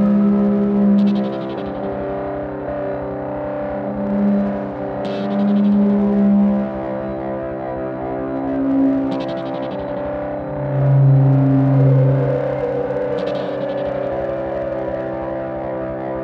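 Generative electronic music from patched desktop synthesizers (Korg Volca Modular, Korg Volca Keys, Cre8audio East Beast): a steady held drone, bass notes that change pitch every second or two, and a short bright buzzy accent that repeats about every four seconds.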